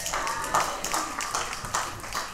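Audience applauding: many hands clapping at once in a dense, irregular patter.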